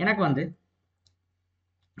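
One short spoken word, then a single faint click about a second in.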